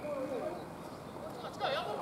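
Players' voices calling out across a rugby pitch, too distant to make out, with one louder shout near the end.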